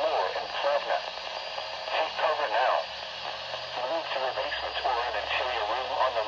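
A weather radio's small speaker playing the computer-synthesized voice of a National Weather Service tornado warning, reading out a list of locations in the storm's path.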